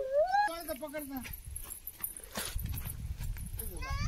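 A drawn-out vocal call that wavers up and down in pitch for about the first second, with a shorter gliding call near the end, over a low rumble in the second half.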